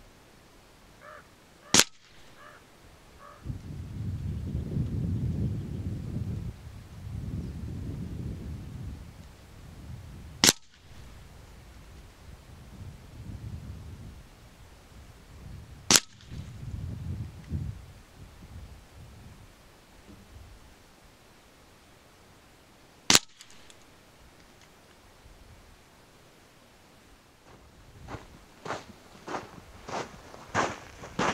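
Theoben Rapid .25 PCP air rifle fired four times, each a single sharp crack, spaced several seconds apart. Gusts of wind rumble on the microphone between the shots.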